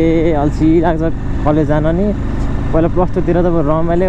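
A person's voice in wavering, drawn-out phrases over the steady low rumble of a motorcycle on the move.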